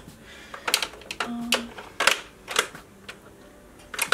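Small plastic makeup tubes and pencils clicking and clattering against a clear acrylic drawer organizer as they are put away and picked through. There are a few separate sharp clicks, with a pause between them.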